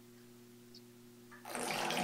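A faint steady electrical hum, then about one and a half seconds in, water starts splashing into the sealed concrete bathtub, much louder than the hum.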